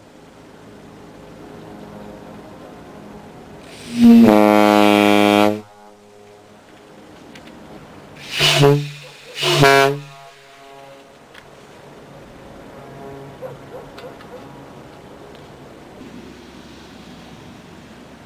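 Compressed-air ship horn blown: one loud blast of about a second and a half about four seconds in, then two short, lower-pitched blasts about a second apart a few seconds later.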